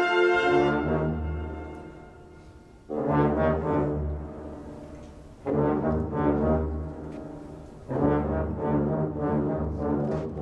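Orchestra brass section, trombones leading, playing sustained chords. A held chord dies away in the first second or so, then three swelling brass phrases enter about two and a half seconds apart, each over a low bass note and each fading before the next.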